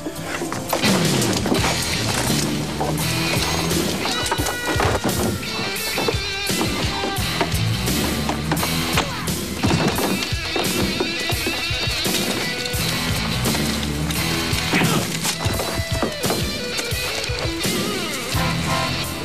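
Dramatic action-scene background music: a driving bass line moving in steps under dense percussive hits.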